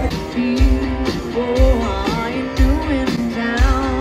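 Live band music through a big outdoor PA, heard from within the crowd: a woman singing a melody over guitar, with a heavy kick-drum beat about once a second.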